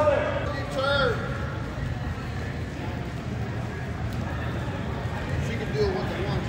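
Voices in a large indoor training hall: two short calls about a second apart at the start and another near the end, over a steady background murmur.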